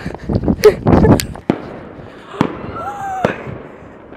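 Fireworks going off: a few sharp cracks about a second apart, with shouting voices at the start.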